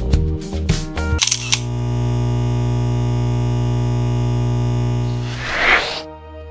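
Background music with a steady beat. About a second in it breaks off into a long held synth chord. Near the end a swelling whoosh transition effect follows.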